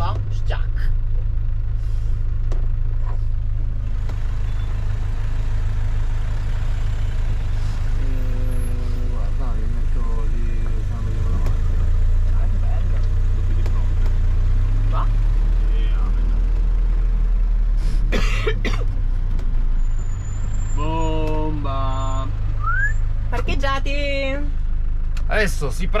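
An Iveco-based motorhome's engine running at low speed while the vehicle manoeuvres, heard from inside the cab as a steady low drone that shifts in pitch partway through.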